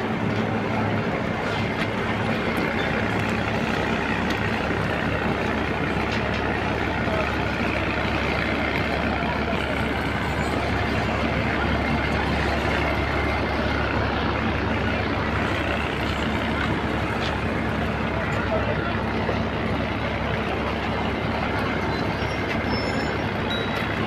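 Railway locomotive running as it moves slowly past at close range: a steady low hum over a constant dense noise, holding the same level throughout.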